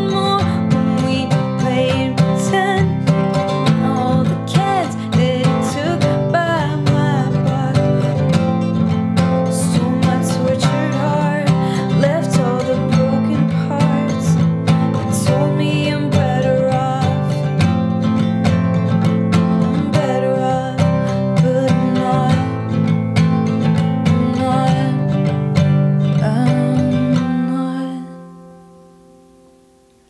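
Steel-string acoustic guitar strummed in a steady rhythm, with a woman singing over it in places. The strumming stops about three seconds before the end on a final chord that rings out and fades away.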